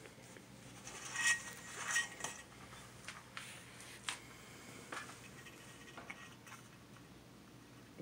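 Light metallic clatter and scraping as a two-week-old toy poodle puppy is set and shifts about in a stainless steel bowl, with a couple of brief ringing clinks between one and two seconds in, then a few faint scattered clicks.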